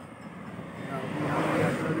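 A motor vehicle approaching on the road, its engine and tyre noise swelling steadily louder.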